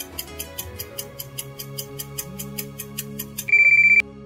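Quiz countdown timer ticking about five times a second over background music. A loud, steady electronic beep about half a second long follows near the end and signals that the answer time is up.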